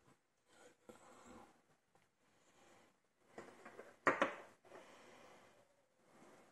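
Quiet handling noise of tweezers and small lock cylinder parts being worked by hand, with one sharp metallic click about four seconds in.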